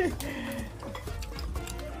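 Light clinks of cutlery and dishes at a table, with faint background chatter.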